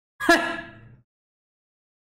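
A man's short, voiced gasp of surprise, starting sharply about a quarter of a second in and fading away within a second.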